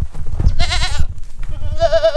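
Goats bleating: two quavering calls, one about half a second in and a second one near the end.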